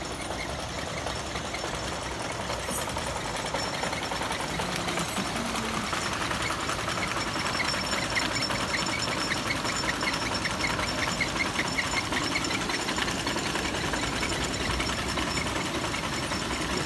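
A small engine running steadily with a fast, even clatter, getting slightly louder a few seconds in. A run of short high chirps sounds over it in the middle.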